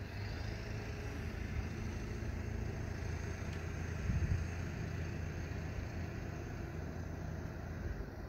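Crew boat's engine running at idle, a steady low rumble that swells briefly about four seconds in.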